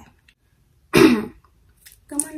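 A young woman clears her throat once, a single short loud burst about a second in.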